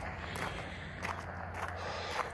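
Footsteps crunching on loose gravel, several steps at a walking pace, over a low steady hum.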